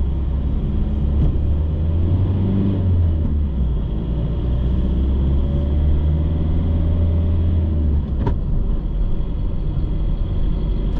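Car driving at low speed on city streets: a steady, deep engine and road rumble. The deepest part of the rumble drops away about eight seconds in, and a short click follows just after.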